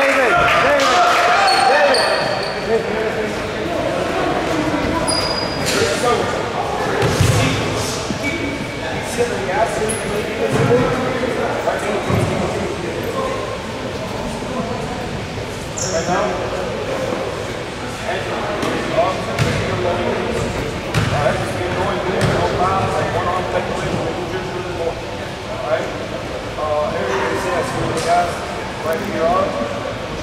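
Many voices chattering in an echoing gymnasium, with a basketball bouncing on the hardwood floor now and then and a few short high squeaks.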